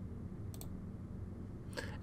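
A single short click about half a second in, typical of a computer mouse button, over a low steady hum.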